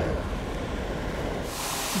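Fire hose nozzle spraying water: a steady rushing hiss that suddenly grows louder and brighter about one and a half seconds in, as the spray opens wider.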